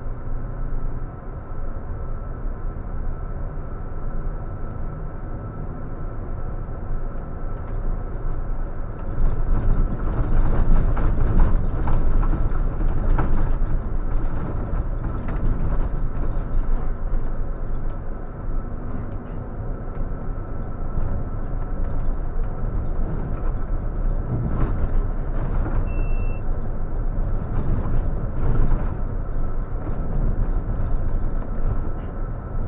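Intercity coach's engine and road noise heard from the driver's cab while driving along the highway, a steady rumble with a thin steady whine, getting louder about nine seconds in. A short electronic beep sounds once near the end.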